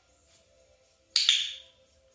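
A handheld training clicker pressed once, giving one sharp double click about a second in. It marks the moment the puppy's rear touches the floor in a sit.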